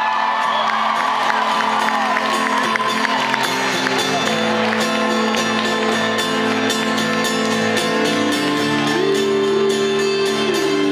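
Live rock band on acoustic and electric guitars playing the opening bars of a song, with chord changes about four and about eight seconds in. The crowd cheers and whoops over the first couple of seconds, then fades under the music.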